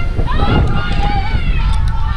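Wind buffeting the camera microphone in a continuous low rumble, with voices calling out over it, drawn-out and rising and falling in pitch.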